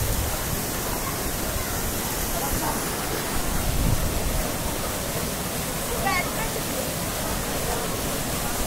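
Steady rush of Kempty Falls pouring into its pool, an even wash of water noise, with a brief low rumble near the middle. Faint voices come through about six seconds in.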